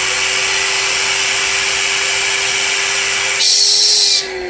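Balloon-stuffing machine's vacuum motor running steadily, pulling the air out of the chamber so the stuffing balloon inflates inside it. Its hum rises slightly in pitch, and a louder hiss joins in near the end.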